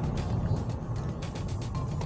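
Car driving over a cobblestone street, heard from inside the cabin: a steady low rumble of road noise with irregular small clicks and rattles from the stones, with background music.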